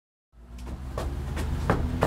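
A moment of dead silence, then a low steady hum fades in, with a few short, sharp knocks or clicks spaced a little under half a second apart.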